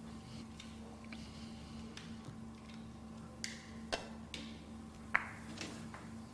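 Sharp clicks of Russian pyramid billiard balls as a shot is played: cue on ball and heavy balls knocking together, the loudest click with a brief ring about five seconds in. A steady low hall hum runs underneath.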